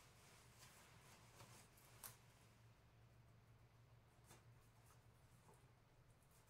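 Near silence: room tone with faint handling sounds as a fabric cape is gathered and fastened at the neck, including two faint clicks, about two seconds and about four seconds in.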